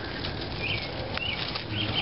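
Rustling of leaves and plant stems being brushed aside by hand close to the microphone, with a few faint short chirps and clicks.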